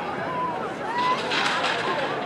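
Spectators at a track meet shouting and calling out over general crowd chatter, with two drawn-out high calls in the first second and a swell of mixed voices from about a second in.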